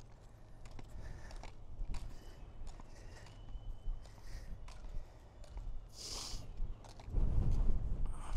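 Moonwalkers Aero motorised shoes rolling over asphalt with each stride, their plastic front wheels making a clacking rumble that grows louder about seven seconds in as the wearer reaches the camera.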